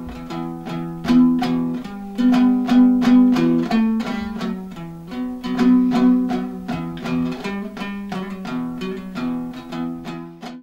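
Kazakh dombra strummed in quick, steady strokes playing a küi, its two strings sounding together so that a pair of low notes carries under the changing melody.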